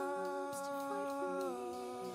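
Closing of a live worship song: a singer holds one long sung note over soft band accompaniment, the note stepping down in pitch about a second and a half in as the music slowly fades.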